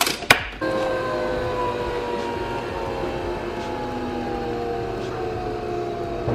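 Nespresso Vertuo capsule coffee machine: its lid snaps shut with two sharp clicks, then the machine spins the capsule to brew an espresso shot. The whir is steady and its several tones slowly fall in pitch.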